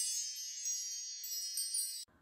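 Shimmering, high-pitched sparkle chime sound effect for an animated intro: many bell-like tones ringing together and slowly fading, then cutting off abruptly at the end.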